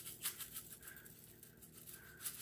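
Spice shaker jar of everything bagel seasoning shaken over raw, egg-washed bread dough: a faint run of quick rattling shakes as the seeds sprinkle onto the loaf.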